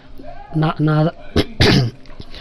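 A person clears their throat with a short, harsh cough near the end, after a few brief voiced sounds.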